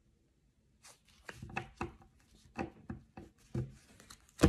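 A deck of tarot cards being shuffled and handled: a quick run of irregular soft clicks and taps that starts about a second in.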